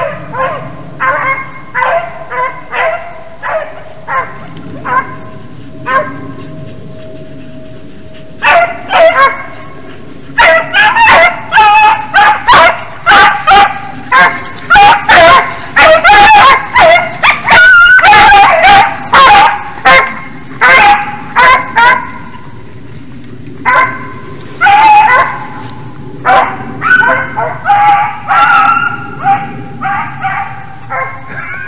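A pack of beagles baying while running a hare. The bays come about one a second at first, then one long drawn-out bay. Then comes a long, loud stretch of overlapping bays from several hounds, a brief lull, and more bays near the end.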